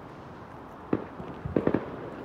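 Fireworks going off, heard as muffled bangs: a single bang about a second in, then a quick cluster of three near the end.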